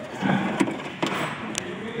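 The rear-view camera wiring harness, in corrugated plastic loom, being handled against the trunk lid and its plastic connector grasped: rustling with a few light clicks.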